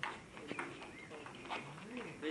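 Table tennis ball ticking off paddles and the table during a rally: a few sharp clicks at uneven intervals, with faint voices near the end.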